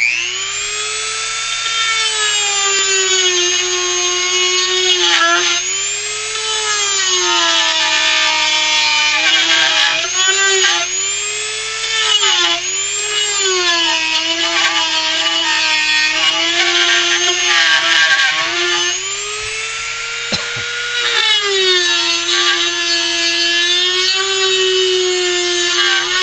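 Dremel rotary tool switching on and spinning up, then running with a high whine as its small burr carves into wood; the pitch sags and recovers over and over as the bit is pressed in and eased off.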